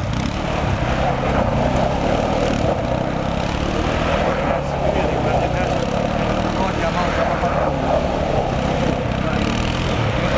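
Kymco Maxxer 300 quad's single-cylinder four-stroke engine running under throttle at fairly steady revs while the ATV drifts in circles on loose gravel.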